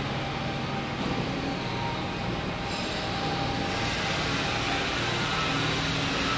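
Wulftec WSML-150-B semi-automatic stretch wrapper running a wrap cycle: the turntable drive and powered pre-stretch film carriage make a steady mechanical running sound with a low hum.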